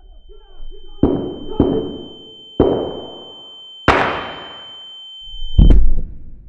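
Gunshots as a sound effect in a song: four shots, each with a long echoing tail, then a louder final blast near the end, over a thin steady high-pitched ringing tone.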